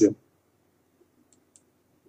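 A man's word trailing off at the very start, then a near-silent pause over a faint low hum, broken by two faint short clicks a little over a second in.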